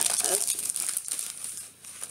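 Packaging crinkling and rustling as it is handled during unboxing, in many small crackles that ease off near the end.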